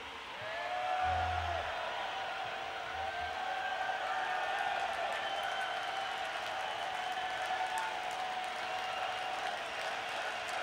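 Large open-air festival crowd cheering and shouting between songs of a heavy metal set. Under it runs a steady faint hum, and two short low thumps come about a second and three seconds in.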